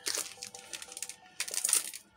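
Trading cards being handled and slid against each other: two short rustles, one at the start and one about a second and a half in. Faint background music underneath.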